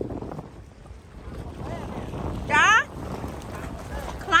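Wind buffeting the microphone as a steady low rumble. About two-thirds of the way in comes a short, high, wavering voice cry.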